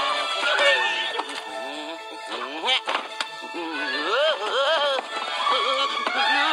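Cartoon background music, with short wordless voice sounds from the characters about four seconds in.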